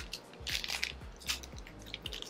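Hands opening blind-box pin packaging: crinkling and crackling of the wrapper, with a few sharper crackles about half a second and just over a second in.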